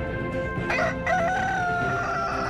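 A rooster crowing once: a long call that begins just under a second in and falls slowly in pitch, heard over theme music.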